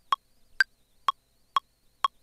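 Ableton Live's software metronome ticking four times, about half a second apart. The second click is higher in pitch and marks the downbeat of the bar. It is the guide click for recording a drum pattern.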